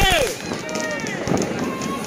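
People's voices talking and calling out, in short phrases, with no firecracker bangs yet.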